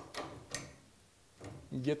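Two light metallic clicks from an open-end wrench on the chain-tension nut of a garage door opener's trolley as the nut is loosened.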